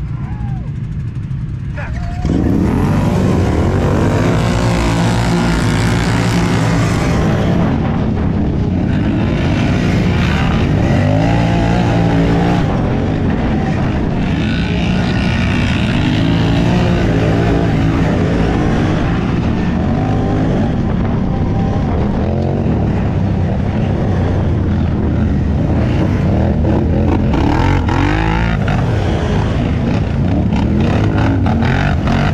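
Several ATV (quad) race engines open up together at full throttle about two seconds in, after a quieter start. The rider's own quad then keeps running hard, its pitch rising and falling as it revs through the gears while racing.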